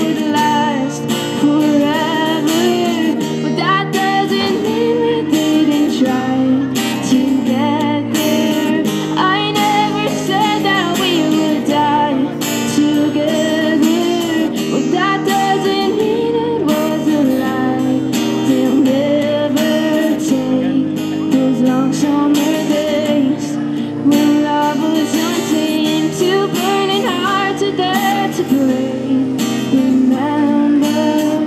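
A woman singing a slow melody while strumming chords on a steel-string acoustic guitar.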